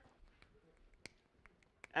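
A few faint, scattered clicks and taps, the clearest about a second in, from a small container of pH paper being handled while someone tries to open it.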